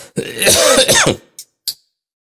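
A man clearing his throat once, loudly, for about a second, followed by two brief short sounds.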